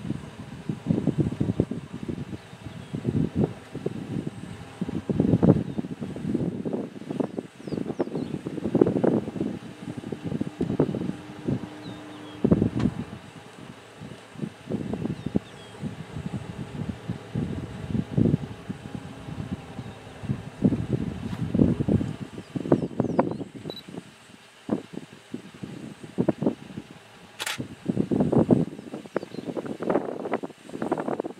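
Wind buffeting the microphone in irregular low rumbling gusts, with one sharp click near the end.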